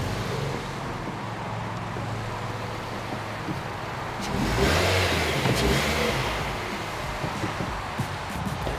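Mazda 2 hatchback's small four-cylinder engine running at low speed as the car creeps into a garage, with a brief rise in revs about four and a half seconds in before it settles back.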